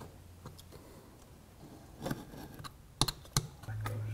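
Utility knife blade cutting through thick veg-tan leather on a cutting mat: faint scratching, a short scraping cut about two seconds in, then two sharp clicks. A steady low hum comes in near the end.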